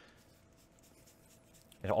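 Faint rubbing and sliding of Magic: The Gathering trading cards against each other as a stack is fanned through by hand; a man starts speaking near the end.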